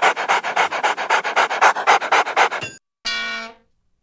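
Fast dog-style panting, about seven breaths a second, that cuts off abruptly a little before three seconds in; then a short held tone of about half a second.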